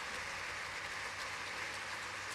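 Audience applauding steadily, a fairly faint, even clapping without music.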